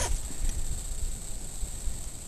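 Irregular low rumble of wind on the microphone, over a steady high-pitched drone of insects, with a brief short sound right at the start.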